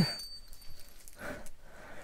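Faint clinking and rattling of a chain gambrel's steel links being handled, with a thin metallic ring fading out in the first second.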